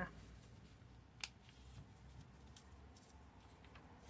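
Near silence with faint handling sounds of a paper template being pressed and shifted over macramé cord, and one small click about a second in.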